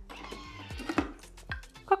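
Background music with a steady beat, with soft rustling handling noise in the first second as hands work at a Thermomix mixing bowl and its lid.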